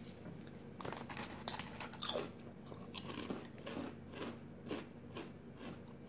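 Lay's Wavy potato chips being bitten and chewed by two people, a string of irregular crisp crunches.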